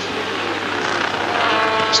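Racing sidecar outfits' engines running hard on track, with several engine notes sliding up and down in pitch as they pass, getting louder near the end.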